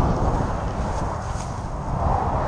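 Wind buffeting the microphone in a steady, gusting rumble, with the noise of passing highway traffic beneath it.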